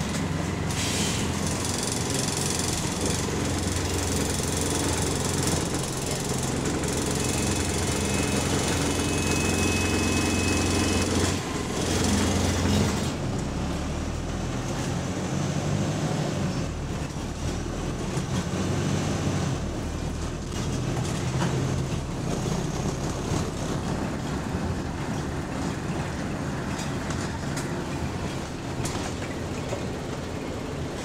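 Wright StreetLite bus heard from inside while under way: the diesel engine runs steadily, with rattling from the body and fittings over the road noise. A thin whine sounds for a few seconds in the first half, and about 13 seconds in the engine note changes and the hiss eases.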